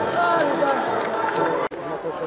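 Arena crowd of spectators talking and calling out over one another, with a brief sharp dropout near the end.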